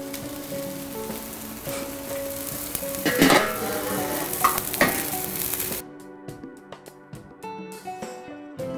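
Chicken drumsticks sizzling over hot coals on a charcoal kettle grill, with a couple of sharp knocks partway through, under soft background guitar music. About six seconds in the sizzle cuts off suddenly and only the music remains.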